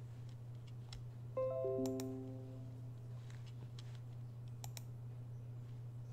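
A short electronic chime of four notes stepping down in pitch, starting about a second and a half in and ringing out over about a second. Scattered mouse and keyboard clicks are heard over a steady low hum.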